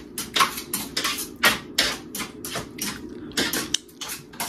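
Handling of food packaging and a plate: a quick run of sharp clicks and plastic crinkles, a few a second, over a faint steady hum.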